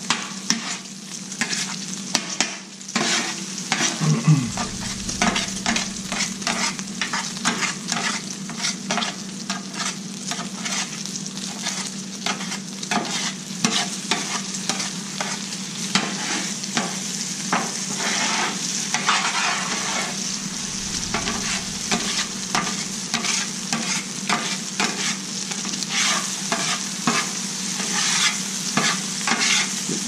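Chorizo sizzling on a Blackstone flat-top griddle while a metal spatula scrapes and chops against the griddle top in quick, repeated strokes.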